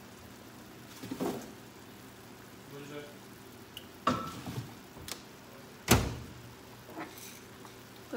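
Kitchen handling sounds: a few light knocks and clatters, then one sharp thump about six seconds in, over a steady low hum.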